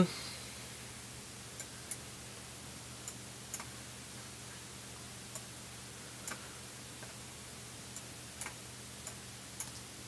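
Faint, irregular computer mouse clicks, about a dozen scattered through the stretch, over a low steady electrical hum.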